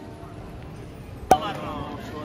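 Faint background music fades, then a single sharp click with a short ring about a second in, followed by a faint murmur of voices.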